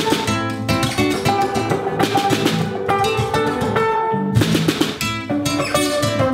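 A live band playing an Afrobeat-style groove: guitars pick short, repeated interlocking figures over a drum kit.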